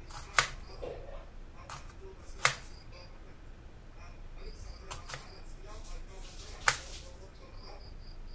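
Kitchen knife cutting down through a red onion and knocking on the chopping board: three sharp knocks spaced unevenly, with a few fainter taps between.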